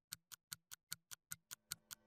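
Quiet clock-like ticking sound effect, sharp ticks at about five a second. About a second and a half in, a low steady tone comes in under the ticks.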